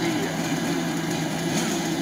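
Several large-scale RC cars' small two-stroke petrol engines running together at low, steady revs, a constant buzzing drone as the cars roll toward a race start.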